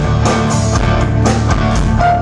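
A rock band playing live, an instrumental passage with no singing: electric guitar over bass and drums, the drum strokes falling about twice a second.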